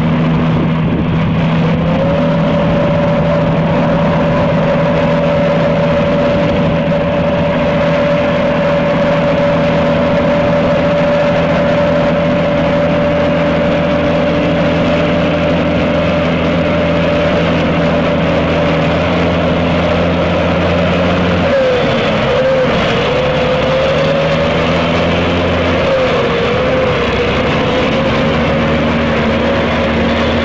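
A heavy six-wheel tanker truck's engine running hard at steady revs as it fords a fast river, over the noise of rushing water. About twenty seconds in, the engine note shifts and wavers.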